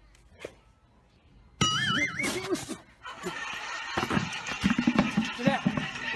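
A sudden loud, wavering high-pitched cry about a second and a half in, followed by excited shouting voices.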